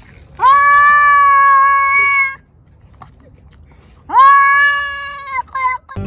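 Domestic cat yowling in a standoff with another cat: two long drawn-out calls, each rising at the start and then held steady, and two short ones after the second. This is a warning or threat yowl.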